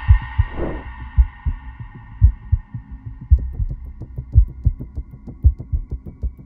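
Cinematic intro score: a deep, heartbeat-like bass thump about once a second under a held synth chord that slowly fades. A short falling sweep passes under a second in, and quick faint ticks join about halfway through.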